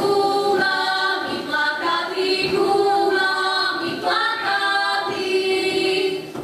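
A group of women singing a Slovak folk song together, unaccompanied, in long held notes.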